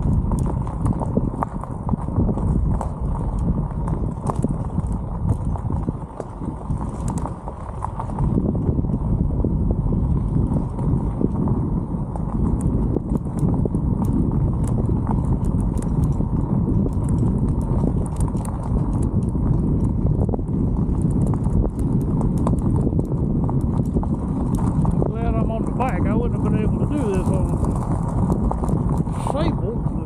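E-bike tyres crunching and rattling over a loose gravel road in a continuous, rough rumble.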